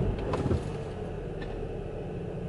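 Car engine idling, a steady low hum heard from inside the cabin, with a few faint clicks in the first half-second.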